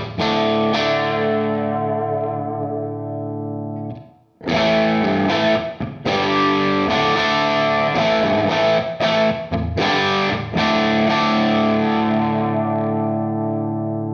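Electric guitar driven through a Hudson Broadcast germanium preamp pedal into a clean amp channel, giving a distorted, gritty tone. Strummed chords ring out, break off briefly about four seconds in, resume, and a last chord is left to ring and slowly fade.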